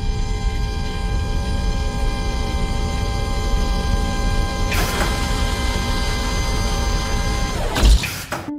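Steady low rumble of a jet airliner in flight, with a sustained hum of several steady tones over it. A whooshing swell rises about five seconds in and another near the end.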